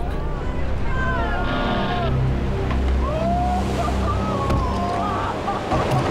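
Heavy surf breaking, with a motor running under it and short distant shouts rising and falling through the middle.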